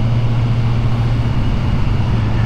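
Kawasaki Ninja 1000SX's inline-four engine running at a steady pace on the road, with wind and road noise rushing over the rider.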